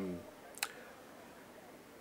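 A man's voice trailing off, then a single short, sharp click about half a second in, followed by quiet room tone.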